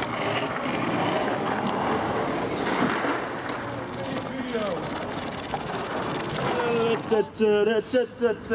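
Indistinct voices over a busy background noise, then near the end a voice rapidly chanting "tat tat tat tat" over and over in quick, even syllables.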